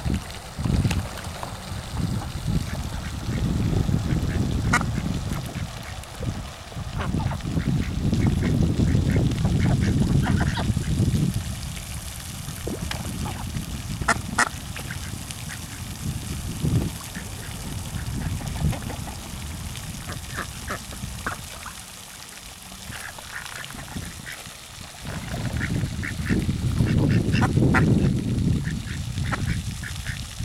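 White domestic ducks quacking now and then on a pond, with wind rumbling on the microphone in long gusts.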